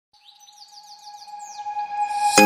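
Bird chirping in a quick run of short falling notes over a steady held tone, both fading in.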